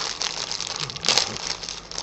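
Plastic wrapping around a t-shirt crinkling as it is bitten and torn open, with a louder rip about a second in.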